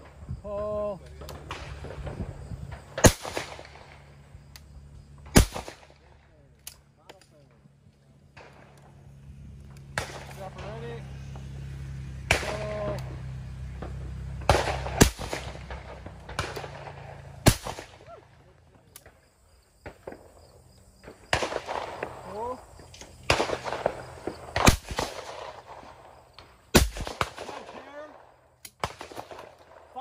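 Over-and-under shotgun fired at clay targets in three pairs of shots, the two shots of each pair about two seconds apart.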